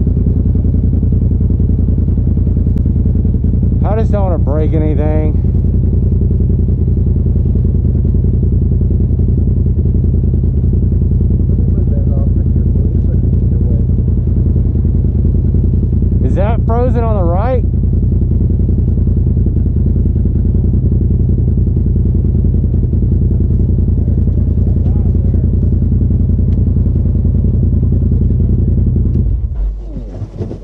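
Polaris RZR side-by-side's engine idling steadily, then cutting off abruptly near the end.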